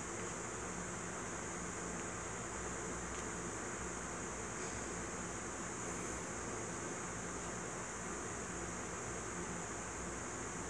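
Steady low background hiss with a faint, even hum underneath: room tone, with no distinct event.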